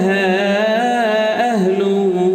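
A man's voice chanting Arabic salawat, holding one long ornamented note on a single syllable; the pitch wavers and steps down about three quarters of the way through.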